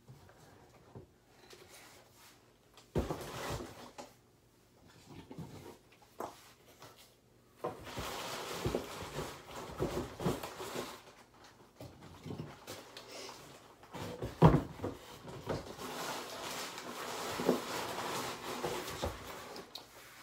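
Scattered knocks and rustling as cartons of tube-feeding formula are gathered and handled, sparse at first and busier from a little under halfway through, with the loudest knock about three-quarters of the way in.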